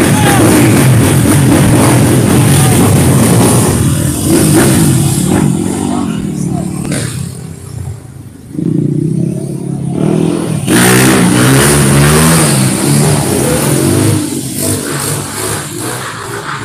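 A motor vehicle engine revving loudly as it passes on the road. It drops away about eight seconds in and comes back loud a few seconds later.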